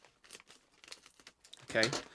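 Scissors cutting across the top of a plastic Doritos chip bag: faint, scattered crinkles and snips of the bag's film.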